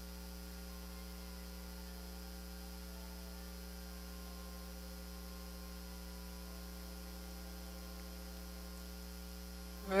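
Faint, steady electrical mains hum: a low constant buzz with no other sound over it.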